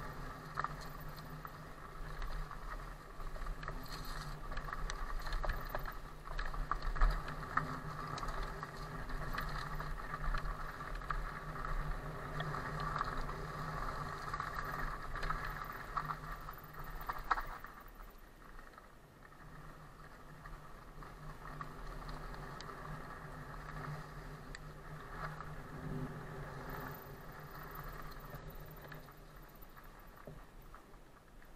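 Riding noise of an electric mountain bike (Cube Stereo Hybrid) moving fast down a dirt forest trail: a steady run of tyre and drivetrain noise with small rattles and knocks. It is louder for the first half and quieter after about eighteen seconds.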